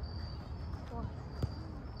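Crickets chirping in a steady high trill behind faint children's voices, with a single thump about halfway through, like a soccer ball being kicked.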